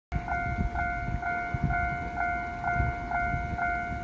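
Railway level-crossing warning bell ringing steadily at about two dings a second, its signal sounding to warn of a train.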